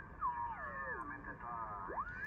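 Yaesu FT-890 HF transceiver's receive audio as the tuning dial is turned across the 80-meter band. A tone slides down in pitch, then garbled, off-tune single-sideband signals waver, and a tone sweeps up near the end. The pitches shift as the dial moves the radio across signals and their beat tones.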